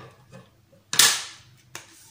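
Stiff paper plate being cut and handled: a sudden loud crackle of the paper about a second in, fading over about half a second.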